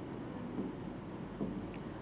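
Faint strokes of a marker writing on a board.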